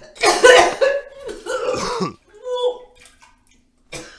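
A man coughing harshly, with a strained vocal sound that drops in pitch about two seconds in, then a short fainter vocal sound.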